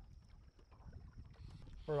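Faint low rumble of wind and small waves lapping around a boat on a choppy lake, with a thin steady high tone that stops about two-thirds of the way through.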